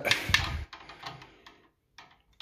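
Metal clicks and rattles of a hand tool working a hose clamp as it is checked for tightness. A quick cluster of sharp clicks comes in the first half-second, then a few fainter ones.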